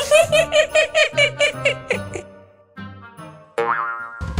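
A cartoon voice runs through a quick string of short, high syllables, like sly tittering, until about two seconds in. After a brief lull, a rising cartoon sound effect plays near the end.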